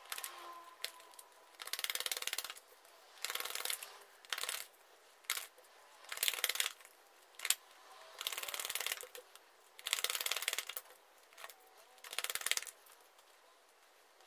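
Tarot cards being drawn from a deck and laid down one after another onto a spread on a table: a series of short papery swishes and snaps, roughly one every second or so.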